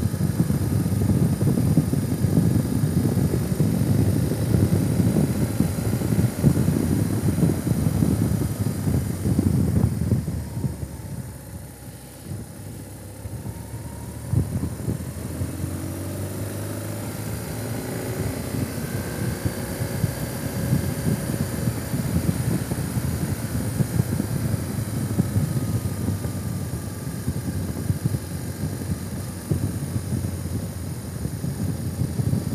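Vehicle on the move: a steady low rumble of engine, tyres and wind that drops away for a few seconds about a third of the way through, then a faint engine tone rises and falls as the rumble builds again.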